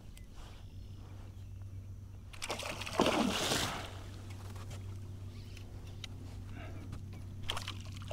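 A hooked gar thrashes at the surface beside the kayak: one loud splash lasting about a second, a little before the middle, as the fish shakes free of the lure. A low steady hum runs underneath.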